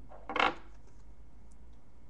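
A single brief clink of a small cosmetics jar, the MAC Paint Pot in Groundwork, being handled, about half a second in.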